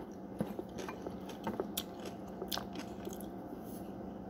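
Close-up eating sounds: a mouthful of raw cornstarch being chewed, with a few faint, sharp crackling clicks spread through it.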